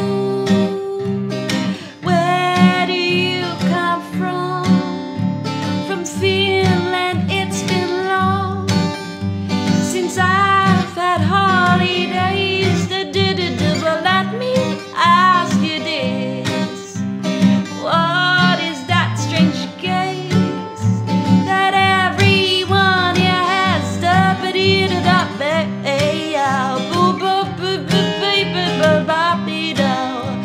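Acoustic gypsy-swing music: Larrivée acoustic guitars keep a steady strummed rhythm under a wavering lead melody.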